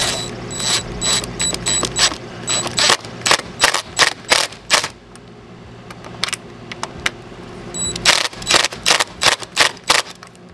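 Cordless DeWalt impact driver driving screws into the brass flange of a garboard drain plug in a fiberglass hull, in short trigger pulses of rapid hammering, about three a second. The pulses come in two runs, one through the first half and another near the end. The screws are being run in snug, not yet tightened.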